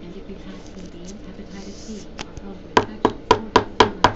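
A clear rigid plastic card holder tapped down on a tabletop: one tap, then a quick run of five sharp taps about four a second near the end.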